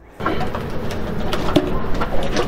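Steady outdoor background noise with a bird cooing briefly about one and a half seconds in, and a few light knocks.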